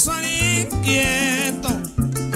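Live joropo (Venezuelan llanera music) band playing between sung lines: the llanero harp carries the melody over steady deep bass notes.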